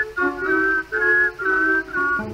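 Whistled melody over the song's band accompaniment: a short phrase of about five held notes in the tango.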